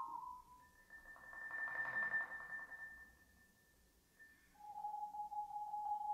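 Concert marimba in a slow, quiet passage: a fast run dies away, then a single high note is held, swelling and fading. After a near-silent pause, a lower note is held from about four and a half seconds in.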